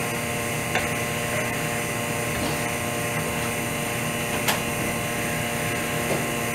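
Steady hum of a lamination vacuum pump running, drawing the air out of the PVA bag around a prosthetic socket. Two brief clicks sound over it, one near the start and one about two thirds of the way through.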